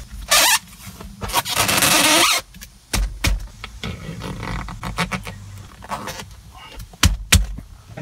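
Socket ratchet tightening the armrest pivot bolt on a car seat: two bursts of rapid ratchet clicking and scraping in the first couple of seconds, then scattered sharp clicks and knocks from the tool and the armrest, the loudest pair near the end.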